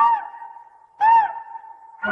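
Two short, echoing hoots about a second apart, each sliding up and then down in pitch: a cartoon owl's hoot.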